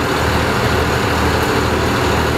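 Cummins 5.9 diesel engine of a 1992 Bluebird school bus idling steadily, heard from inside the bus at the driver's seat. It is running while its fuel valves are switched back from vegetable oil to diesel to purge the lines before shutdown.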